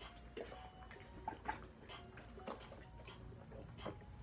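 Faint gulping and glugging as water is chugged from an upturned 1.5-litre plastic water bottle, in scattered small clicks and swallows.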